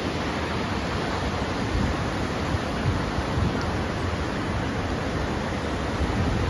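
Ocean surf breaking and washing up the beach, a steady rush of noise.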